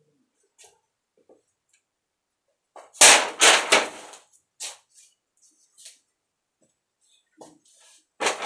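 A sword cutting through a paper grocery bag: a sudden, loud burst of paper crackling and tearing about three seconds in, lasting about a second. A few fainter short sounds follow.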